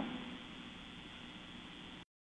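Faint, steady hiss of a webcast audio feed with no speech, with a faint steady hum under it.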